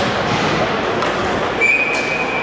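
The general din of a ball hockey game in a large indoor arena: a steady mix of play and crowd noise, with a thin, steady high-pitched tone starting about one and a half seconds in.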